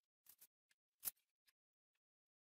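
A few short, sharp clicks and light taps of a hand tool being handled on a pine frame, the loudest just after a second in.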